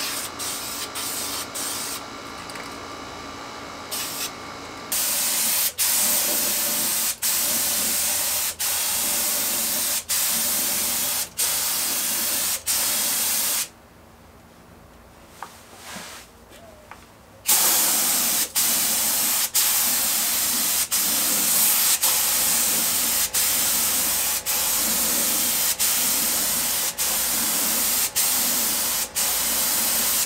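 Compressed-air paint spray gun spraying clear coat onto car wheels: a steady hiss in passes, each broken by a brief gap as the trigger is let off. It starts about five seconds in, stops for a few seconds in the middle, then goes on again.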